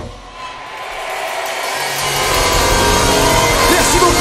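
Live band music: a sharp hit at the start, then a building swell of sound, with bass and drums coming in about two seconds in and growing steadily louder.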